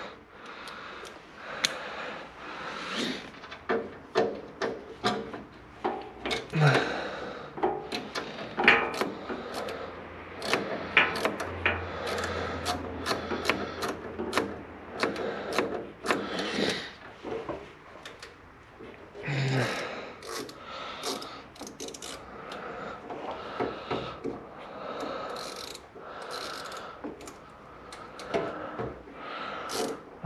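Hand tool work on an excavator's hose and fuel-line fittings: many irregular metal clicks, knocks and rubbing from small sockets and bits being handled and fitted.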